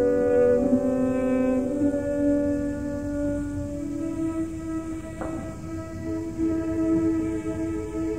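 Opera orchestra playing slow, sustained chords, the harmony shifting to a new held chord about two seconds in and again near four seconds.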